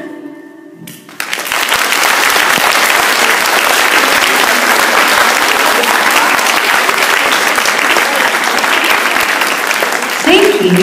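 A hall audience clapping steadily. It begins about a second in, just after the last sung note of a pop song dies away.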